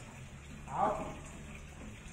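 A single short spoken word or call a little under a second in, over a steady low hum.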